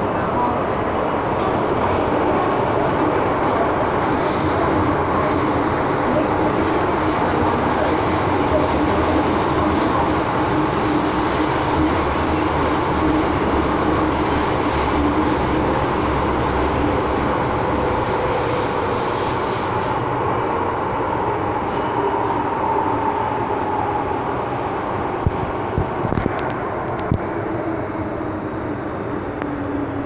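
MTR M-Train metro car running through a tunnel, heard from inside the car: a steady rumble of wheels on rail with a motor tone that sinks slightly in pitch near the end. A few sharp clicks come a few seconds before the end.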